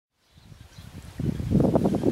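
Outdoor ambience fading in from silence, then a loud low rumble of wind buffeting the microphone from about a second in.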